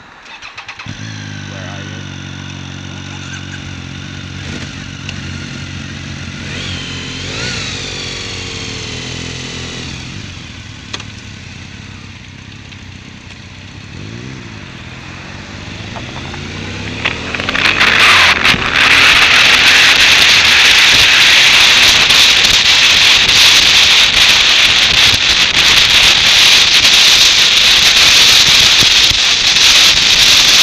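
Motorcycle engine starting about a second in and idling steadily, with a brief blip of the throttle a few seconds later. Past the halfway point the bike pulls away, and a loud, steady rush of wind and road noise over the bike-mounted microphone takes over.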